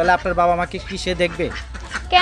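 A woman's voice talking, over a steady low hum.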